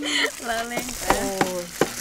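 People talking over a steady high hiss, with a few light clicks.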